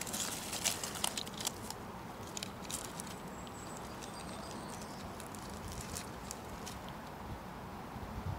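Light crackling and rustling of twigs and dry forest-floor litter being pushed aside by hand and with a stick. The small clicks come in a cluster over the first few seconds, then thin out to a faint, steady background.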